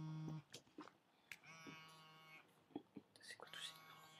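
Faint telephone ringing tone heard over the phone line: a steady buzzy tone about a second long, repeating about every two seconds, while the call waits to be answered. A few small clicks fall between the tones.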